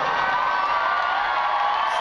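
Large concert crowd cheering and screaming, with long high-pitched screams held over a steady roar.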